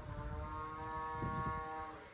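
Grey wolf howling: one long, steady-pitched howl that fades out just before the end.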